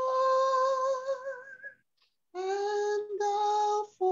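A woman singing a slow devotional song unaccompanied, holding two long notes: a higher one for the first second and a half, then after a short pause a lower one. The notes start and stop abruptly.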